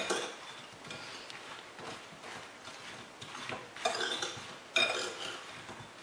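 Metal spoon scraping and clinking against a ceramic bowl while tossing sliced, sugared strawberries, with a couple of louder ringing clinks about four and five seconds in.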